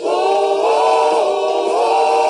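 A group of voices singing together in harmony, holding long notes whose pitches shift together.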